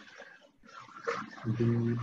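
Speech: a man's voice says a single word near the end, after a short pause with only low background noise.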